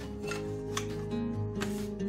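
Soft background music with a few light wooden clacks as thin wooden paint stir sticks are handled and set down on a table.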